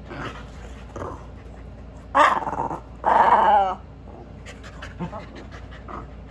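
A Keeshond and a Boston Terrier vocalizing as they play-wrestle, with two loud, drawn-out vocal outbursts about two and three seconds in, the second wavering and falling in pitch, over soft rustling.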